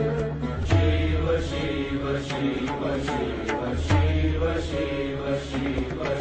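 Indian devotional music: a chant-like melody over regular drum strikes, with a deep bass note returning about every three seconds.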